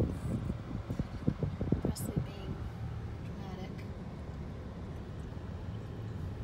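Steady low road and engine hum inside the cabin of a moving car. Over the first two seconds or so there are short, louder sounds from inside the car; after that only the even hum remains.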